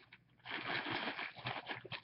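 Soft rustling and handling noise with small clicks, starting about half a second in: hands fiddling with something close to the microphone.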